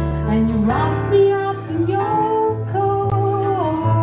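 Live jazz: a woman singing long held notes that slide up between pitches, with vibrato on a held note near the end, over plucked double bass and keyboard.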